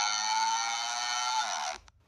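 A cartoon character crying: one long, steady wail that bends down in pitch and cuts off near the end.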